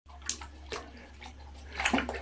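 A squirrel swimming in a bathtub, making small, occasional splashes in the water over a steady low hum.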